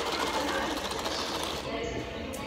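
Slurping through a plastic drinking straw from a paper cup: a rapid rattling suck that is loudest for the first second and a half, over the murmur of voices in a busy room.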